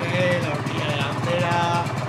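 Aprilia RS 250's two-stroke V-twin idling steadily while still cold. The engine is freshly rebuilt with Nikasil-plated cylinders, new pistons, crankshaft and bearings, and is still being run in.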